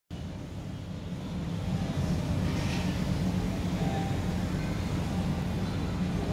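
Steady low rumble of indoor background noise, with a faint higher sound about two and a half seconds in.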